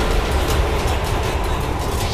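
Dramatic TV-serial background score: a loud, steady, dense drone heavy in the bass.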